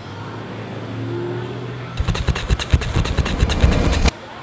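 A motor hum building up for about two seconds, then from about halfway a loud, rapid, uneven clatter that stops abruptly.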